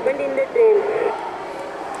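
A recorded voice played back through the small loudspeaker of a sound playback module, the way the emergency message reaches the loco pilot's cabin.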